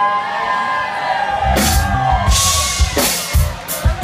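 Live country-rock band in a club: held, bending guitar notes over crowd whoops, then the drum kit comes in about a second and a half in with kick drum and cymbal crashes.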